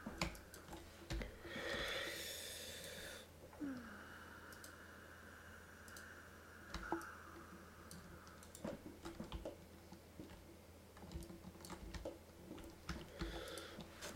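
Faint, scattered clicks of a computer mouse and keyboard over a low steady hum, with a brief hiss about two seconds in.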